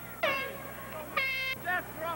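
Shouting from players or spectators at a lacrosse game: a loud yell with falling pitch just after the start, then a short, steady-pitched blast about a second in, and more calls near the end.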